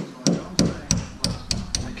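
Hammer striking a 6 mm steel rod to drive it into a hole drilled in a brick wall, as a wall tie: about seven quick strikes, three to four a second.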